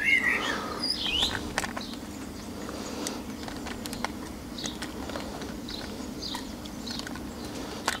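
Small birds giving short chirps, most of them in the first second or so, over a steady low hum.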